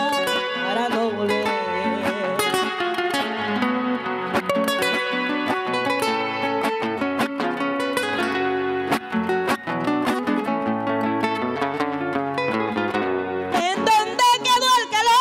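Two acoustic guitars playing an instrumental passage of a Panamanian torrente in slow lamento style, with plucked melody runs over bass notes between sung verses.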